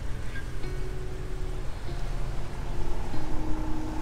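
Sailing yacht under way: a loud, steady low rumble of engine and water or wind noise, with faint steady tones over it.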